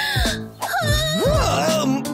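A character's wordless voice whimpering and wailing in swooping rising and falling glides, over background music.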